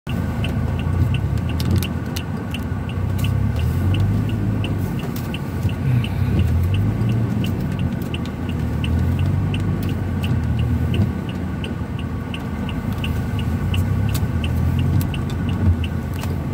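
A car engine running at low speed, heard from inside the cabin, with an even ticking about three times a second from the indicator flasher.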